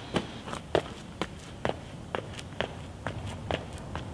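Running footsteps, sharp separate steps about two a second.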